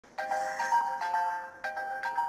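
Mobile phone ringtone: a short electronic melody of steady tones that starts just after the beginning, breaks off briefly and starts over about a second and a half later.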